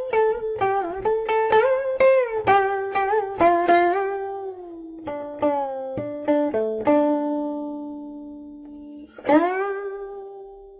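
Guqin solo: a quick run of plucked notes, several sliding in pitch as they ring. The notes then thin out to a long low note left to ring, and near the end a fresh note slides up into its pitch and sustains.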